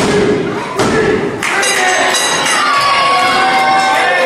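A few heavy thuds from the wrestling ring in the first second and a half, then the crowd cheers and shouts, with children's voices among them.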